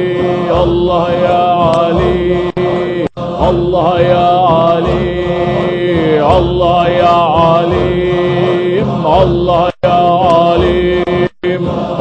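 Group Sufi zikr chanting: voices hold a steady drone while a voice above sings bending, ornamented lines of the divine-name chant. The sound cuts out for an instant three times.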